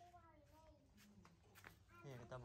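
Faint, high calls from a baby monkey, one sliding down in pitch near the start.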